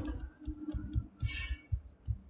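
Irregular low thumps and a brief rustle of a phone being handled close to its microphone, over a faint low hum.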